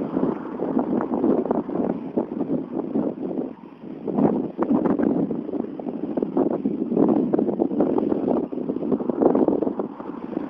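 Wind buffeting the microphone of a phone carried on a moving bicycle: a loud, gusting rumble that rises and falls, with a brief lull a little before the middle.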